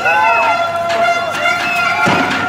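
A protest crowd shouting while a plastic horn blows a steady held note, with a few sharp cracks among the noise.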